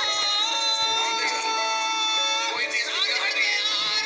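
A man singing into a microphone, holding one long note for about two seconds before breaking into shorter sung phrases.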